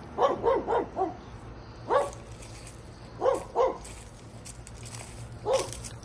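A dog barking: a quick run of four barks, then a single bark, a pair of barks, and another bark near the end.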